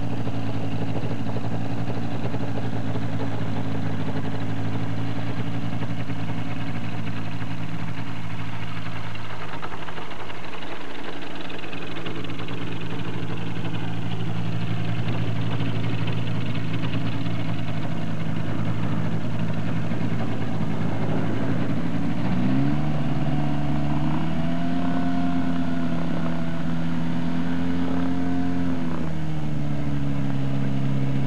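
Engine and propeller of an Avid Amphibian floatplane running at low power as it taxis on the water. About three-quarters of the way in the engine is throttled up to a higher pitch, held there for several seconds, then eased back down near the end.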